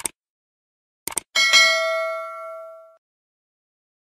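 Subscribe-button animation sound effect. A click comes right at the start and a quick double click a little after a second in. Then a bell-like ding rings out and fades over about a second and a half, as the notification bell is switched on.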